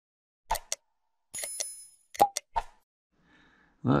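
Sound effects of an on-screen subscribe-reminder animation: two short clicks, a bright bell ding that rings for about half a second, then two more clicks.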